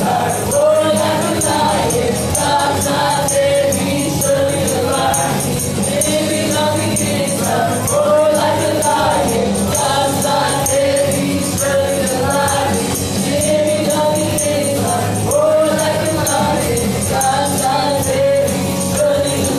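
Gospel worship song: a woman singing the lead into a handheld microphone with other voices joining over backing music, and a tambourine shaken in an even rhythm.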